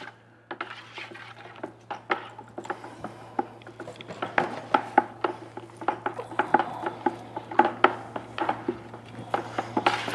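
Wooden paddle sticks knocking and scraping against the walls and bottoms of plastic five-gallon pails as epoxy resin and hardener are stirred by hand: quick, irregular taps, several a second, getting busier after the first few seconds.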